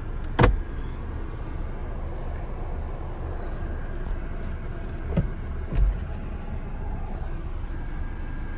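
A car glove box lid is shut with a sharp click about half a second in, followed by a steady low hum in the car's cabin and two soft thumps around five and six seconds.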